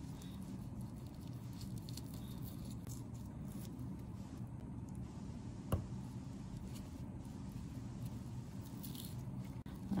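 Faint soft slicing and handling sounds of a dissecting knife cutting down the middle of a preserved sheep brain, over a steady low room hum. One sharp click about six seconds in.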